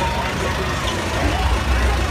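Tractor engine running with a steady low rumble as it pulls a float slowly past, growing louder near the end, with crowd voices in the background.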